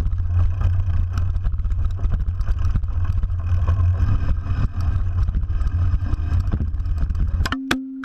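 Mountain bike filmed from a camera clamped to its lower swing-arm: a heavy, steady rumble with constant rattling as the bike runs over the dirt trail. Near the end come several hard knocks and a short ringing tone, and the rumble cuts off: the camera mount breaking and the camera tumbling off the bike.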